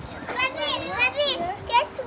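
Young children's high-pitched voices calling out at play, in short bursts with pauses.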